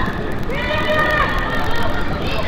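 Voices calling and shouting across a football pitch during play, several calls overlapping, one of them drawn out.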